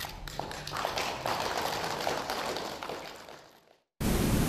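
Faint ceremony-room ambience: a haze of low noise with scattered light taps and clicks, fading out to silence shortly before the end.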